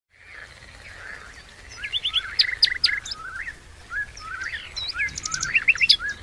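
Several wild songbirds singing and calling together, a busy overlap of quick chirps and rising whistled notes.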